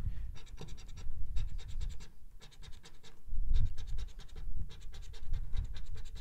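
A coin scratching the coating off a lottery scratch-off ticket in fast repeated strokes, in several runs with short pauses between.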